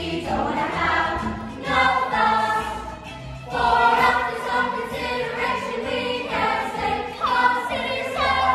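A young musical-theatre ensemble singing together over musical accompaniment, in phrases of one to two seconds.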